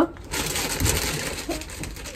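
Rustling, handling noise close to the microphone, starting about a third of a second in and fading toward the end.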